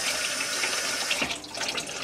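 Kitchen tap running into the sink, shut off a little over a second in, then a few light knocks.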